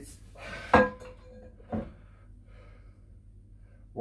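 A metal turntable platter being set onto the record deck of a Marconiphone radiogram: one sharp clunk under a second in, ringing briefly, then a lighter knock about a second later, with quiet handling in between.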